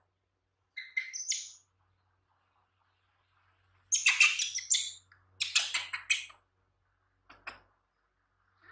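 Baby monkey giving high-pitched squeaks: a short one about a second in, two louder, longer bouts of squealing around four and five and a half seconds, and a brief squeak near the end.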